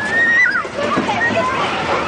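Children squealing and shrieking with excitement on a spinning amusement-park ride. High, drawn-out cries rise and fall in pitch over excited chatter.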